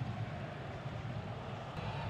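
Steady low rumble of stadium crowd ambience on a televised football broadcast, with no distinct cheers or whistles.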